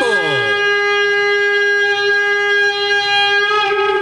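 A shofar sounding one long, steady note held for about three seconds, after a few short falling slides at the start.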